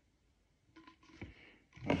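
Quiet room with a few faint, short clicks of hard plastic bottle parts being handled about a second in; a voice begins right at the end.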